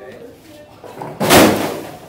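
A tall stacked tower of books and objects toppling off a table and crashing onto the floor: one loud crash a little over a second in, dying away within half a second.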